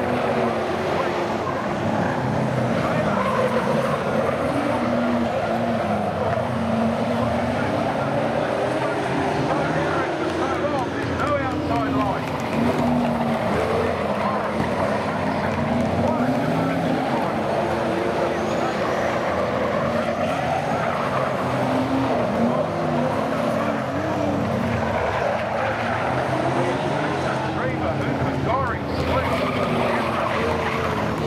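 A pack of V8 saloon race cars lapping a dirt speedway oval, engines revving up and down in repeated rises and falls as they go through the corners, with occasional tyre skid noise.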